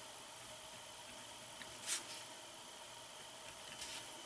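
Quiet room tone with a faint steady hiss, and one short soft scratch about two seconds in from a pen stroking the canvas.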